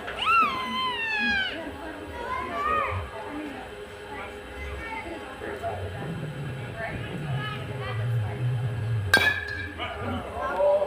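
Spectators' voices: a high shout near the start, then more calling and low talking. About nine seconds in comes a single sharp metal-bat ping as the ball is hit, ringing briefly.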